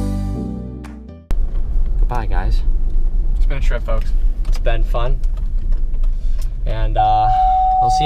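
Background music fades out, then a moving car's cabin, with a loud steady low road-and-engine rumble under voices. Near the end a steady high beep begins and holds.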